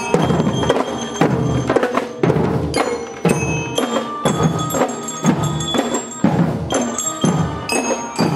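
Marching drum band playing: bell lyres (marching glockenspiels) ring out a melody of struck metal notes over a steady beat from snare and bass drums.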